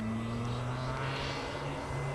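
A Radiolink D460 RC airplane's 2204 brushless motor and propeller buzzing in flight. The pitch creeps slowly upward, and a whirring swells in the middle as the plane passes.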